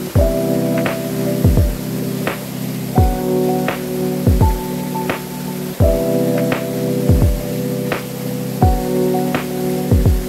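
Background music with a steady beat: deep bass kicks that slide down in pitch, sharp snare- or clap-like hits in between, over sustained chords.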